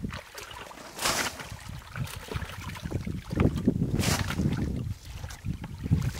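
A plastic bucket scooping and sloshing muddy water out of a shallow pit, with a rush of splashing water about a second in and again about four seconds in.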